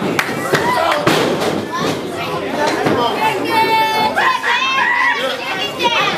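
A small crowd chattering and shouting, with several sharp thuds of wrestlers' strikes and ring impacts in the first couple of seconds and a high-pitched shout about three and a half seconds in.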